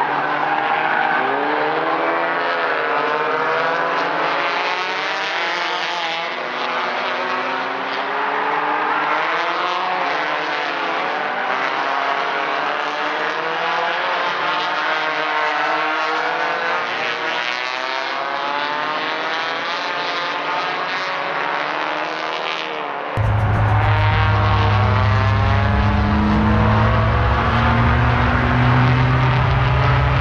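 Several small touring race cars' engines revving up and down through a corner, their notes rising and falling over one another as they pass. About 23 seconds in, the sound switches abruptly to a louder, deeper and steadier engine drone.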